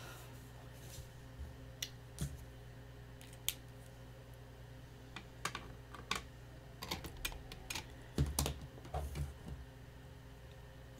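Scattered light clicks and taps of hands handling craft tools and chipboard pieces on a cutting mat, coming thicker and louder in the last few seconds, over a steady low electrical hum.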